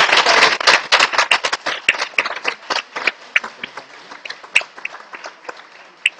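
Applause from a small audience: many separate hand claps, dense at first, thinning out and dying away over the last couple of seconds.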